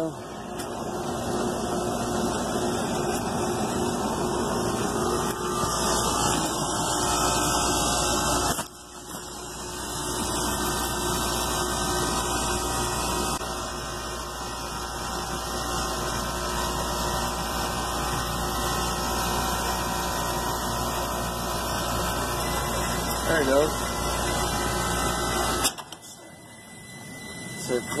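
Carrier rooftop AC unit's compressor running with its condenser fans disconnected, a steady mechanical drone as head pressure climbs toward the fan cycle switch's closing point. The sound drops away suddenly near the end.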